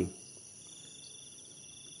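Faint steady high-pitched background tones over a low hiss.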